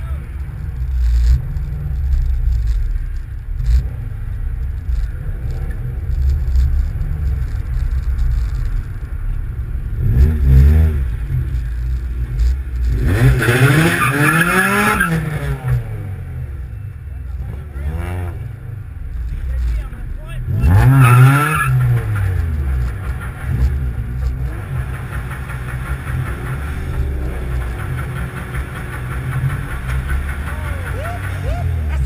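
Steady low engine rumble from a stopped car with its engine running. It is broken by several louder bursts of pitched sound, around ten seconds in, from about thirteen to fifteen seconds, and again around twenty-one seconds.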